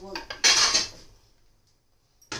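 Metal cookware clanking: a short clatter of pots and utensils about half a second in, then fading out.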